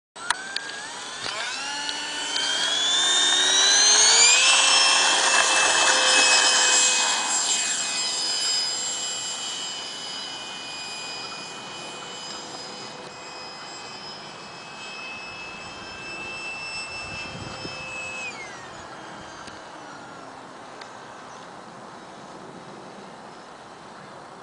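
Electric ducted-fan motor of a Starmax F-5 Tiger RC jet spooling up with a rising whine on the takeoff run, then holding a steady high whine that is loudest a few seconds in and grows fainter as the jet climbs away. About 18 seconds in, the whine drops in pitch as the power comes back.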